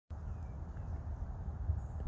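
Low rumble of wind on the microphone over a quiet outdoor background.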